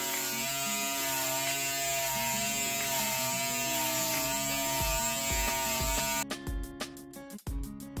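Corded electric hair clippers with a guard buzzing steadily as they cut short, coarse hair, switching off about six seconds in. Background music with a beat plays throughout and stands out after the clippers stop.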